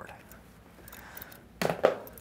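Faint scraping and clicking of a small cardboard box being pulled open by hand, followed near the end by a short burst of a man's voice.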